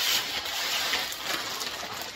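Clear plastic wrapping crinkling and rustling as it is torn and pulled off an aluminium vehicle side step, a little louder near the start.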